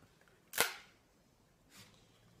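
A single sharp snap about half a second in, then a fainter brushing click near the end, as a folder of papers is handled and opened.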